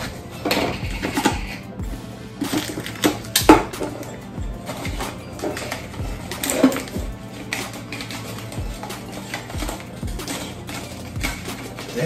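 Background music, with scattered clicks, knocks and crinkling as a Pringles Wavy can is handled and its lid and seal are pulled off.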